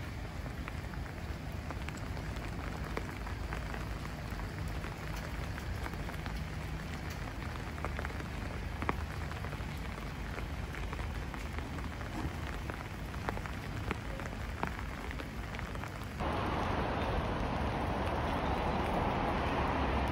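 Steady rain falling, with many small drop ticks scattered through the hiss. About sixteen seconds in, the hiss abruptly becomes louder and denser.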